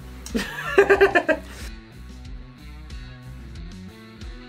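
A short burst of laughter about a second in, over background guitar music with plucked notes. The laughter cuts off abruptly and only the music remains.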